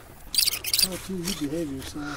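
Short spurts of hissing gas as a brass propane fitting is screwed onto a portable gas stove, with a low wavering tone after it. The hiss is put down to a propane supply that has got overheated.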